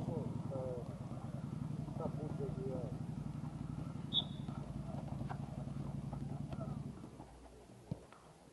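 Indistinct voices over a steady low rumble that drops away about a second before the end, with a few light knocks from footballs being dribbled.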